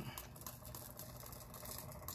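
Faint, light pattering of chunky glitter pieces falling from a small cup onto a glue-coated tumbler and the surface below.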